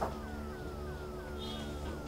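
Background music score: short falling synth notes repeating about three times a second over low sustained tones.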